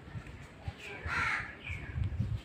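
A crow cawing: one harsh call about a second in, with shorter calls just before and after, over low thuds.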